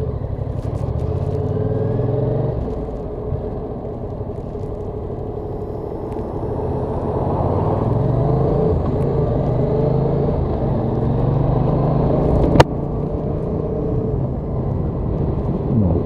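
Yamaha XSR700 parallel-twin engine running as the bike rides off, heard from the bike with road and wind noise; its note dips a few seconds in, then builds again. A single sharp click about three-quarters of the way through.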